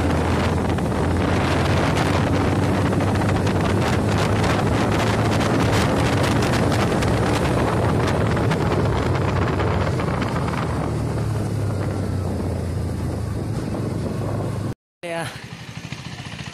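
Motorcycle engine running at a steady cruising pace while riding, with wind rushing over the microphone. The wind noise eases in the last few seconds, and the sound cuts off abruptly near the end.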